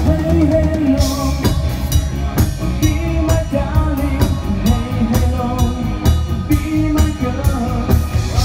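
Live rock band playing an 80s disco medley: drum kit keeping a steady beat under electric guitar and bass guitar, with a male singer's voice over the top.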